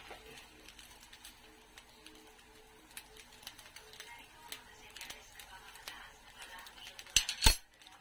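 Quiet kitchen with scattered faint clinks of metal utensils, then two sharp metal clinks about seven seconds in.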